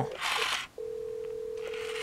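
A short burst of hiss or handling noise, then a steady single-pitch telephone tone from the phone switch that starts a little under a second in.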